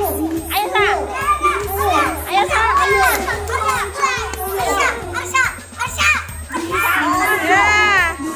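Many children's voices shouting and cheering at once, high and excited, over background music with a steady low bass.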